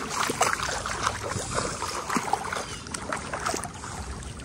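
Bare feet wading through shallow, grassy floodwater: a run of irregular splashing steps.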